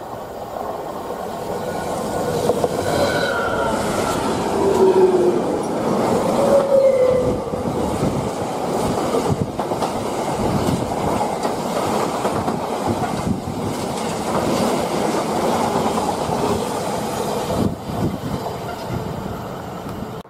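Class 66 diesel-electric freight locomotive passing at speed, its diesel engine giving way to a long run of freight wagons rattling and clattering over the rail joints. A few short squeals from the wheels come between about three and seven seconds in.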